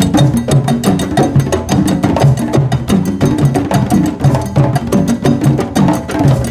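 Several hand drums played together at a drum circle in a fast, continuous interlocking rhythm of many sharp strokes a second, with deep drum tones under crisp slaps.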